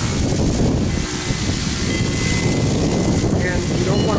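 Handheld electric orbital buffer running steadily, its buffing bonnet rubbing compound around the bearing edge of an acrylic drum shell: a constant motor drone with rubbing noise.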